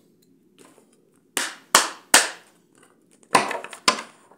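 Tarot cards slapped down on a table: three sharp slaps in quick succession in the middle, then a short clatter of several more near the end.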